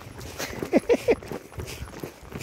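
Footsteps on a dry dirt hillside trail, with three short, steeply falling vocal calls in quick succession about a second in.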